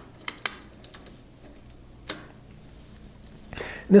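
A few light mechanical clicks from handling the film transport of a Konica Autoreflex T3 35mm SLR: a quick run of small clicks at the start and a single sharper click about two seconds in.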